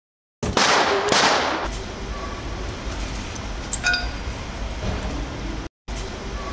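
Street noise at a police arrest: two loud rushing bursts of noise in the first second and a half, then a steady low vehicle rumble with scattered clicks and knocks, and a short tonal sound about four seconds in.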